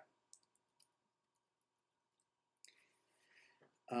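Near silence broken by a few faint clicks in the first second, then a soft hiss about two and a half seconds in, just before speech resumes at the very end.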